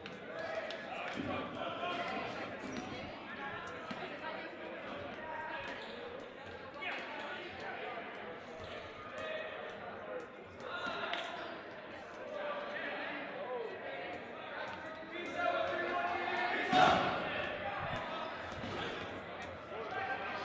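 Rubber dodgeballs bouncing and being set down on a hardwood gym floor, echoing in a large hall, with one sharp smack near the end.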